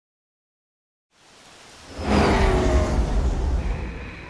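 After about a second of silence, a rushing noise fades in and swells to loud at about two seconds, with a deep rumble underneath and faint, slightly falling whistling tones. A steady high tone comes in near the end.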